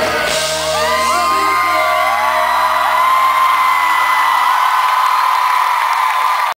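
A live rock band stops on a final hit about half a second in, its last guitar chord ringing out and fading over the next few seconds while the audience cheers and whoops.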